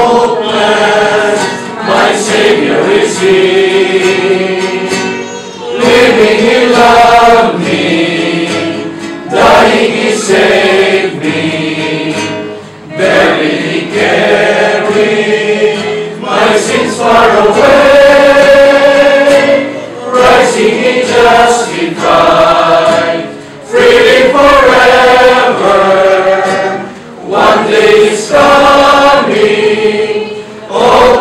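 A small group singing a Christian hymn together, a man's voice leading, with acoustic guitar accompaniment. The singing comes in phrases a few seconds long with short breaks between them.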